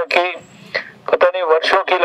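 Speech only: a man speaking Hindi into a handheld microphone, with a short pause in the first second.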